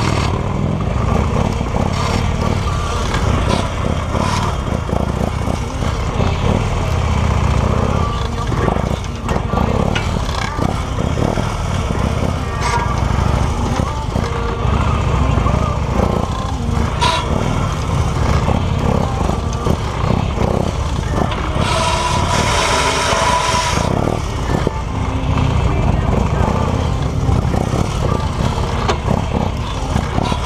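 Police motorcycle engine running at low speed as the bike weaves through a tight cone course, heard up close from on the bike.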